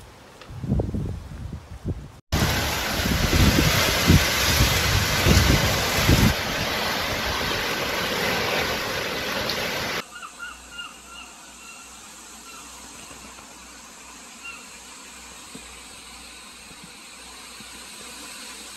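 Wind gusting against a phone's microphone, heard in three cut-together clips: low buffeting at first, then a loud steady rush with heavy gusts for about eight seconds, then a quieter steady wind with a few faint high chirps.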